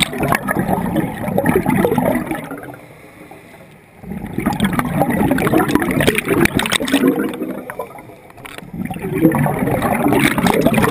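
Scuba diver's exhaled bubbles from the regulator, heard underwater as three long bursts of bubbling, each about three seconds. Quieter pauses fall about three and eight seconds in, while the diver breathes in.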